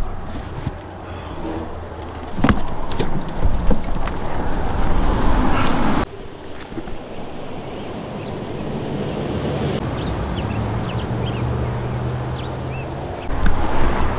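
Wind buffeting an outdoor microphone, a gusty rushing noise that drops off abruptly about six seconds in and carries on more steadily afterwards.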